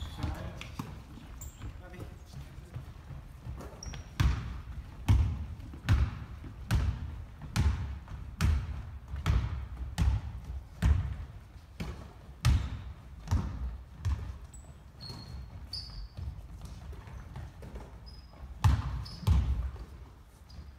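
Basketball dribbled on a hardwood gym floor, echoing in the large hall: a steady run of bounces, a little over one a second, that pauses and then comes back twice near the end. Short sneaker squeaks on the floor are heard between them.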